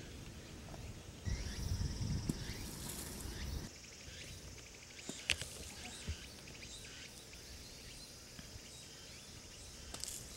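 Outdoor ambience with insects buzzing steadily, and a low rumble for a couple of seconds early on. A few sharp clicks follow midway. Right at the end a sand wedge thumps through bunker sand as a bunker shot is played.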